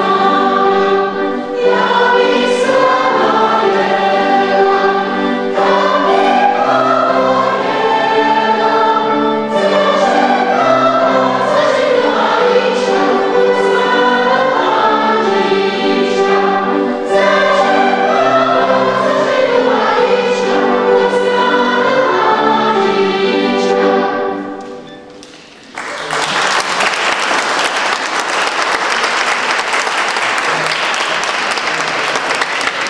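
Mixed choir of children and adults singing a Moravian folk song in several voices. The singing ends about five seconds before the end, and audience applause follows.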